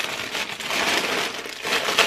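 Clear plastic bag crinkling as it is handled, a dense run of crackles that eases off near the end.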